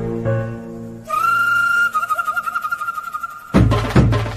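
Background music: soft sustained chords, then a single high held note that wavers slightly from about a second in, and a louder full arrangement cutting in suddenly near the end.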